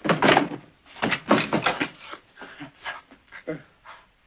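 A man panting hard, out of breath: two long, loud gasps, then shorter, fainter breaths.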